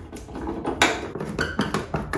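Hand Phillips screwdriver backing screws out of a dryer's sheet-metal duct panel, with a run of irregular clicks and knocks of metal tool on screw and panel, the loudest a little under a second in.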